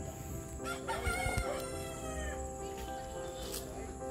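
A rooster crows once, from about a second in, over steady background music.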